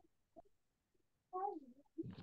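Near silence, broken by a faint click and then, about halfway through, one short voice-like cry that falls in pitch.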